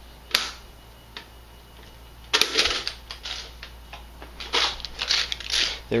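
Clicks and clatter of a 75-round Chinese-style AK drum magazine being taken off the rifle and handled. A sharp click comes first, then a louder run of clacks about two and a half seconds in, then several shorter rattling clatters.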